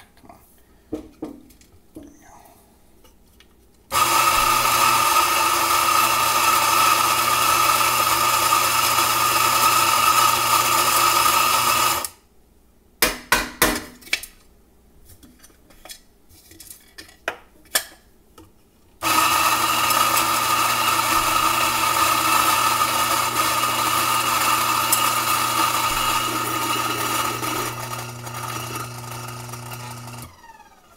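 Electric espresso grinder running steadily as it grinds coffee into a portafilter for about eight seconds, then stopping. A few sharp taps of the portafilter follow to settle the half dose. Then the grinder runs again for about eleven seconds to finish the dose.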